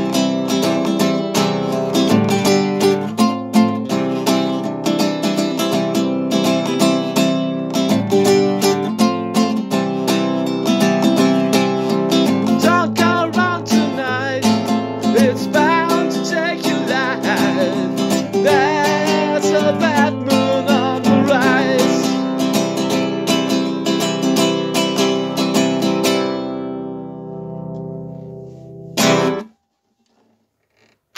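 Classical guitar strummed steadily, with a man's voice singing along through the middle stretch. Near the end the last chord rings out and fades, followed by a brief knock just before the sound stops.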